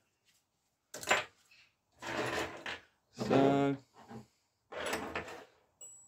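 Small metal bike parts clicking and rattling as they are handled and set down on a wooden workbench, with a short hummed "hmm" around the middle.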